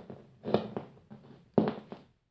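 A small vinyl-coated dumbbell rolled and pushed by hand across a tabletop, giving a run of scraping and knocking. The loudest knocks come about half a second in and again near the end.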